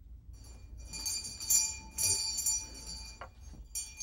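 Small metal bell jingling in repeated shakes, several bursts with a lingering ringing tone between them: a household pull-rope bell rung to announce a caller at the gate.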